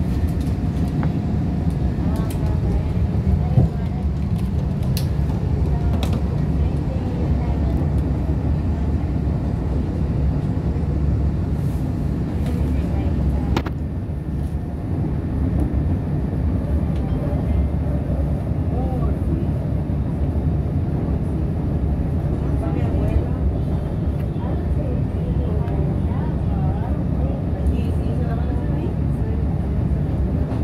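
CTA 2600-series rapid transit car heard from inside while under way: a steady low rumble of the running gear and wheels on the rails, with occasional sharp clicks from the track.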